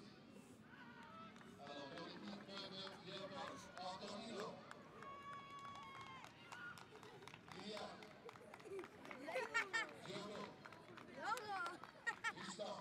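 Indistinct chatter and calls of children's voices, with a held note about halfway through and a few louder, higher shouts near the end.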